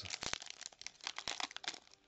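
Plastic-foil wrapper of a Panini Prizm baseball card pack being torn open and crinkled by hand: a run of irregular crackles.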